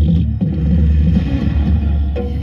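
The light-and-sound show's soundtrack playing over outdoor loudspeakers: a loud, deep rumbling passage with little melody.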